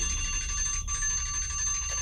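Timer alarm ringing as the countdown hits zero: a steady, high, bell-like ring of several held tones.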